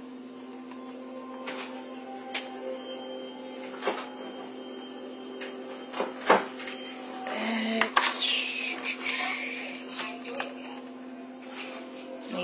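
Light clicks and taps of toppings being spread on pita pizzas on a paper-lined tray, over a steady low hum and faint background music, with a louder, busier stretch about eight seconds in.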